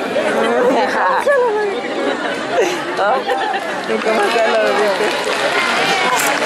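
Several people talking at once, with indistinct, overlapping voices and no words standing out.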